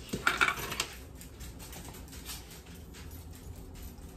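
A few light clinks and scrapes of a fork against a plastic tub and a bowl in the first second, then faint scattered handling ticks.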